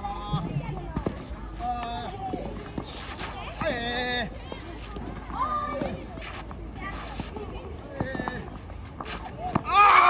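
Children's high-pitched voices calling out during play, with a few sharp knocks between the calls. A loud, excited shout near the end.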